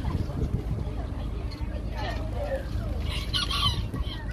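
A chicken clucking, with a louder burst of calls about three and a half seconds in, over a steady low rumble and faint voices.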